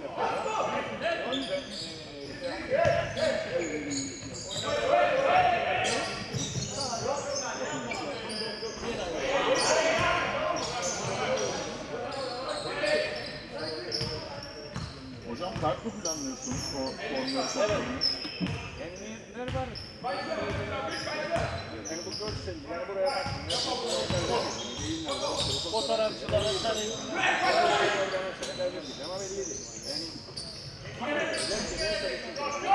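Basketball being dribbled on a wooden gym floor during a game, with players' and bench voices calling out in the echoing hall.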